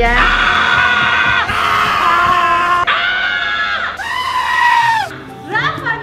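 A young man screaming in four long, high-pitched held cries of about a second each.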